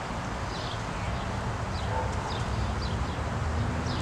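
Outdoor ambience: a steady low rumble with faint, short high chirps from small birds about once a second.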